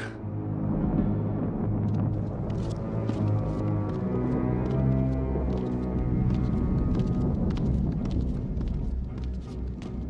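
Ominous cartoon background music with sustained low notes. Light ticks repeat about three times a second from about two seconds in.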